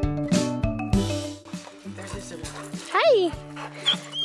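Background acoustic guitar music, with a single short whine from a dog about three seconds in, rising and then falling in pitch.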